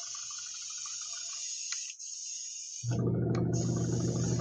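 Airbrush hissing steadily as it sprays transparent black paint onto a lure. About three seconds in the hiss fades and a louder steady low hum comes on, the airbrush compressor running.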